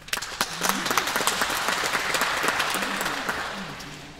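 Audience applause in a concert hall. It breaks out suddenly, holds, and dies away near the end.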